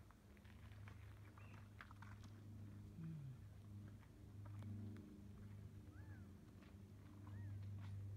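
Near silence: a faint steady low hum with scattered faint ticks and a few faint short high chirps, the clearest two about six and seven and a half seconds in.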